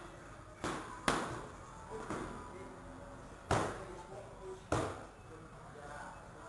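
Muay Thai strikes landing on pads held by a trainer: sharp slaps, two close together about a second in, a weaker one near two seconds, then two more, more widely spaced, in the second half, with faint voices in the background.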